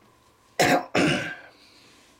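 A man coughs twice in quick succession, two short, loud, rough bursts about half a second apart, the second trailing off.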